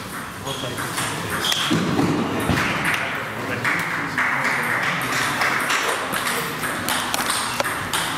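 Table tennis balls clicking off bats and tables at the neighbouring tables, many short sharp taps at an uneven rate, over background voices in the hall.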